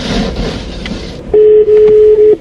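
A phone's ringback tone while a call is being placed: one loud, steady beep at a single pitch lasting about a second, starting a little past halfway. Before it, about a second of rustling noise.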